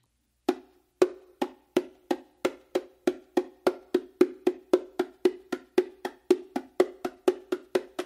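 Hand slaps on the small drum of a pair of Meinl bongos: a steady run of sharp, ringing strokes that speed up from about two to about four a second. It is a slap-strengthening drill, played with the hands resting on the head and rim.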